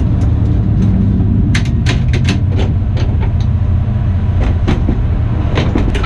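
Drag car engine running steadily, heard from inside the cockpit as a loud, even low rumble. Two clusters of sharp clicks and knocks, one a little over a second in and one near the end, come as the driver takes his helmet off.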